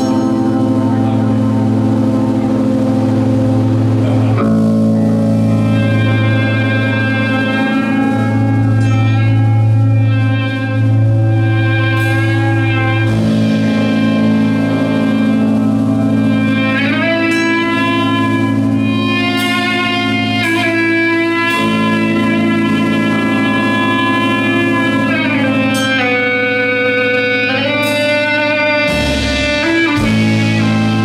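Live band playing slow, long-held electric guitar chords over bass and drums, with the chords changing every few seconds and a few cymbal hits.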